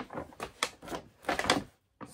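Brown paper bag crinkling and rustling as it is handled, in a string of irregular crackles.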